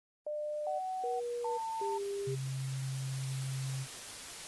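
Electronic logo-intro sound effect: five short beeps jumping between pitches in quick succession, then a longer low buzzing tone from about two seconds in, all over a steady hiss of static.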